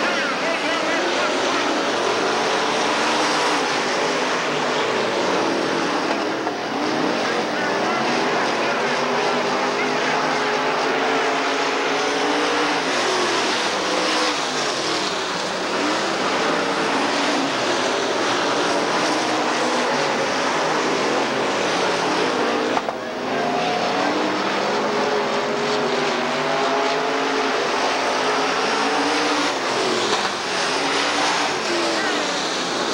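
A pack of dirt late model race cars running hard around a dirt oval, their V8 engines overlapping and rising and falling in pitch as they power through the turns and pass by.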